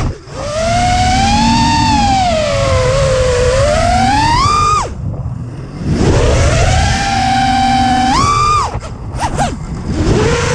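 A 5-inch FPV racing quad's brushless motors (T-Motor 2306.5 2000kv) whining with throttle, the pitch swooping up and down, over a rush of wind. The whine cuts out abruptly just after the start, again about five seconds in and once more near the end, each time rising quickly again as throttle comes back.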